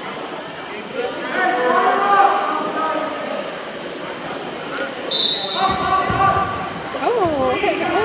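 Voices echoing in a gymnasium during a wrestling bout. About five seconds in, a short, high referee's whistle blast starts the action from the referee's position. Thuds on the mat and louder shouts follow.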